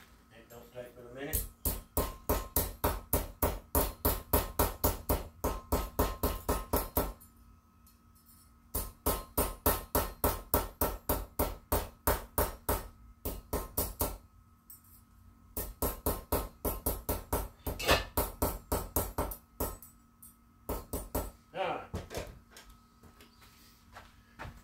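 Metal plumber's tape being hammered flat: quick, even blows, about five a second, in four runs of several seconds with short pauses between, straightening the curl left from the tight end of the roll.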